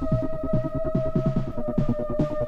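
Scouse house (bouncy) electronic dance music: a held synth note over a fast bass line of short notes that drop in pitch, about four a second, with a hissy hit coming in near the end.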